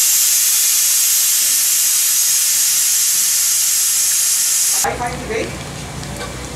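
Mixed-dal pakoras deep-frying in a kadai of hot oil, a loud steady sizzle that cuts off suddenly about five seconds in, leaving a quieter frying sound.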